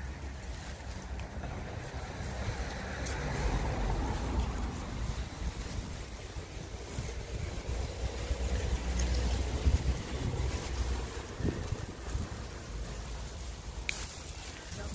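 Wind buffeting the microphone as a fluctuating low rumble, with the leaves and dry stems of tomato plants rustling as a hand pushes through them to pick tomatoes.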